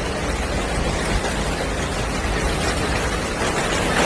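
Steady rushing noise of a flooded street, floodwater and heavy rain, even throughout with a deep rumble underneath.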